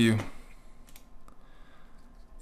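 A couple of faint, short computer clicks about a second in, as the editor is switched over to code view.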